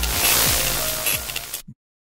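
Logo-animation music sting ending in a loud rushing swell of noise, which cuts off abruptly to dead silence about one and a half seconds in.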